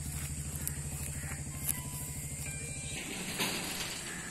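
An engine idling steadily with a low, even pulse, cutting off suddenly about three seconds in.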